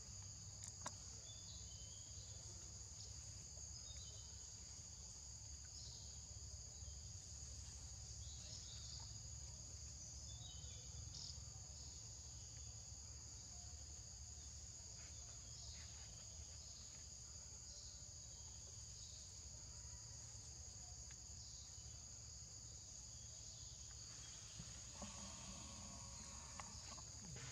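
Faint steady insect chorus: two high, unbroken trilling tones, with short faint chirps every second or two over a low background rumble.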